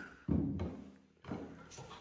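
A hammer knocking on wooden boarding at the foot of a wall: one dull thud about a quarter-second in that dies away quickly, then a softer knock about a second later.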